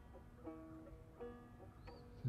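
A banjo played quietly: three or four single plucked notes, each left to ring and fade, spaced about half a second to a second apart.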